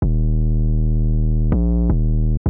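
Trap 808 bass playing on its own: one long, low note, then a shorter note of a different pitch about one and a half seconds in, and a third just before the end, each starting with a click.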